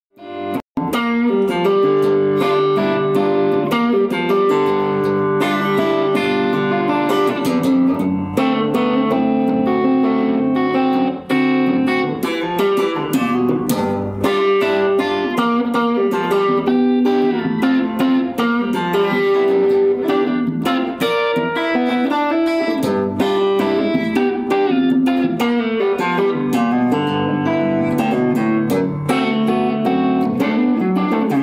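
Tom Anderson Cobra electric guitar with PAF-style humbucking pickups, played through an amplifier: picked single notes and chords ringing on continuously, starting about a second in.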